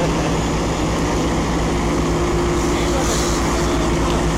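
Fire engine's diesel engine running steadily, with a low even throb and a steady hum. A higher steady tone joins about one and a half seconds in.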